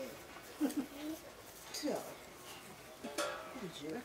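Short, scattered bits of a person's voice with pauses between them, including a quick falling vocal sound about two seconds in.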